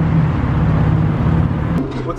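Ford Transit passenger van's engine running steadily, a low hum that drops slightly in pitch near the end.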